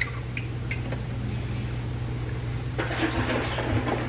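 Milk pouring in a steady stream from a carton into a slow-cooker crock.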